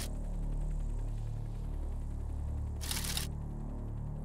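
A low, steady drone of background music, with one short burst of hiss about three seconds in.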